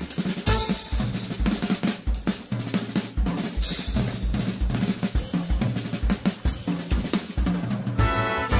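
Jazz drum kit playing alone in a big band recording: busy kick drum, snare and tom strokes with hi-hat and crash cymbals, a drum solo break.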